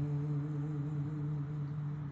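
A male voice humming one long, steady low note, held without a break, as part of a chanted Persian Baha'i prayer.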